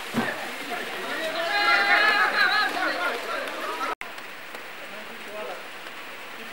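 Footballers' voices calling out during a training drill, with several voices shouting together about two seconds in, over a steady outdoor hiss. The sound drops out abruptly about four seconds in, then only the hiss and faint calls go on.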